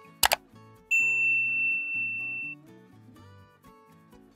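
Subscribe-animation sound effects: a quick double mouse click, then about a second in a single bright notification-bell ding that rings for about a second and a half before fading. Soft background music plays underneath.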